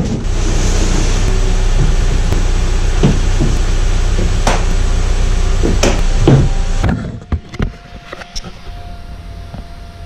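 A parked car running, heard from inside its cabin: a steady hum and rush with a few knocks and clatter, cutting off suddenly about seven seconds in. After that a faint steady tone remains.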